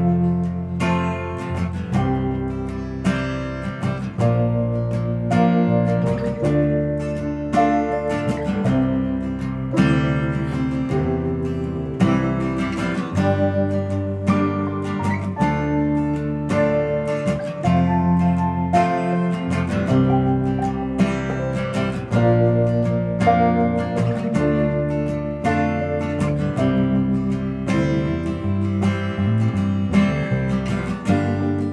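Instrumental introduction of a slow song played by a small band: plucked and strummed guitar notes over sustained bass notes, with no vocal yet.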